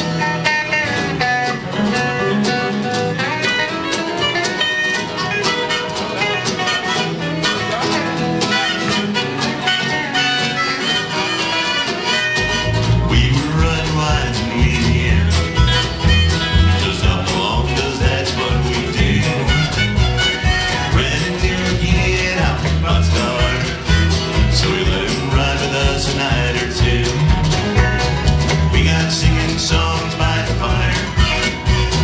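Live country-folk band playing, led by acoustic guitar, with upright bass and drums on stage; the bass and drums come in fully about twelve seconds in.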